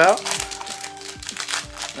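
Foil trading-card booster pack crinkling as it is handled and opened, over quiet background music.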